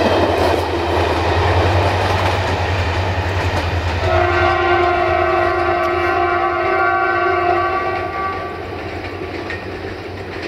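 Passenger coaches passing on the rails with a steady rumble that eases as the train draws away. About four seconds in, a train horn sounds, held on one steady chord for about four seconds.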